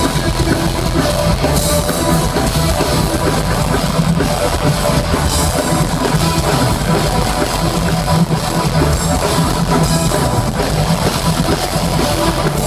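A rock band playing live and loud: drum kit beating steadily under electric guitar.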